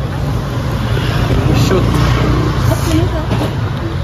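Low rumble of street traffic, a little louder for a couple of seconds in the middle as a vehicle passes.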